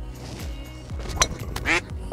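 A golf driver striking the ball off the tee: one sharp click about a second in, over background music with a steady beat. A short rising pitched sound follows just after the strike.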